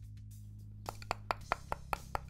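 Steel screwdriver tip tapping and picking at frozen-solid Evo-Stick PVA wood glue in the neck of its plastic bottle: a run of small sharp clicks, the glue rock solid. Quiet background music runs underneath.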